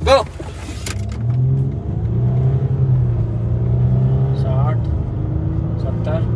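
Range Rover Sport's V6 engine under full throttle, accelerating hard from a standstill, heard from inside the cabin. The engine note builds about a second in and stays strong as the car gathers speed.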